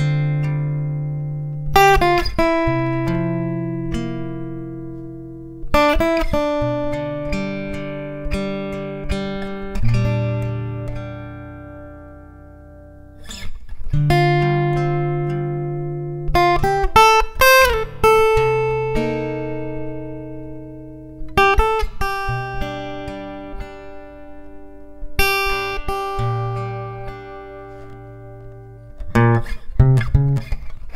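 Background music: slow plucked guitar chords, each left to ring and fade before the next, with a short pause around halfway.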